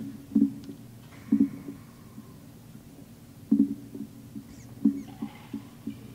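Dull thumps and knocks at irregular intervals, about five in six seconds, with faint scraping between them: handling noise from equipment or the microphone being set up.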